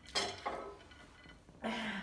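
A person sighing after eating very spicy noodles: a breathy exhale at the start, then a short voiced sigh near the end.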